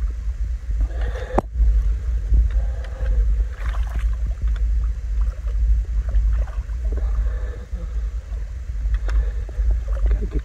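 Steady low rumble on the microphone with a few short knocks and light splashes from an aluminium landing net being worked in shallow water around a released carp.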